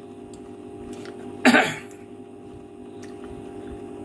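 A man coughs once, a short sharp burst about one and a half seconds in, over a steady low hum.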